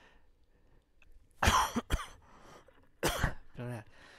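A man coughing to clear his throat, twice, about a second and a half apart.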